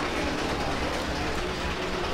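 Escalator running: a steady mechanical rumble under the low hubbub of a crowded shop.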